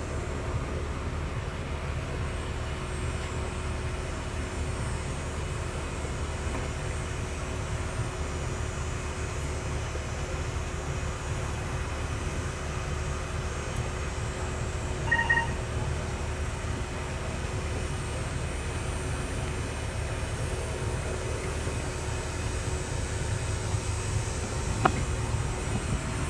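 Steady low outdoor rumble with no clear source; a short high beep sounds once about fifteen seconds in.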